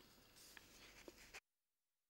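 Near silence: a faint background hiss with a couple of tiny ticks that cuts off to dead silence about a second and a half in.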